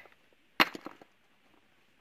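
Two pieces of limestone struck together: one sharp clink about half a second in, with a few quicker, softer clicks after it. This is the ringing knock used as a field test to tell that a rock is limestone.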